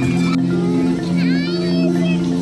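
Background music with long sustained low notes and a higher line sliding up and down in the middle.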